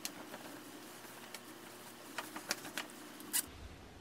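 Quiet rustling of a fleece quarter-zip pullover being pulled on over the head, with a few light clicks and ticks in the second half.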